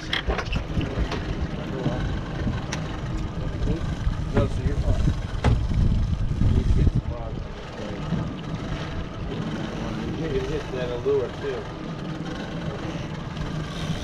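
Twin outboard motors running steadily at low speed, a low engine noise that fills the whole stretch.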